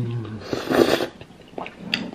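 A person eating spaghetti and meatballs with a mouthful: a short low 'mm' hum, then a breathy rush of air about half a second in, then a few small wet chewing clicks.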